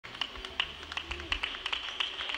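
Scattered, uneven hand clapping from a congregation, with a faint murmur of voices behind it.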